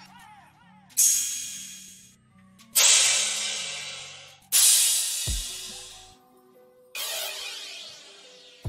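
Crash cymbal samples from a drill drum kit auditioned one after another: four separate crashes, each struck and left to decay before the next. Faint low notes sit underneath, with a deep kick-like thump about five seconds in.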